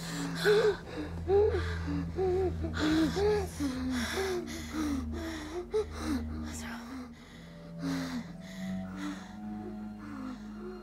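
A woman crying without words, with shaky gasping breaths and short whimpering rises and falls of the voice, over a low steady drone in the film score.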